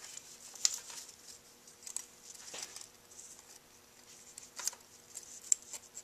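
Faint, scattered light metallic clicks and scrapes, about five in all, as a bent feeler gauge is worked into the rocker-to-valve gap through the valve inspection opening to check clearance. A low, steady hum runs underneath.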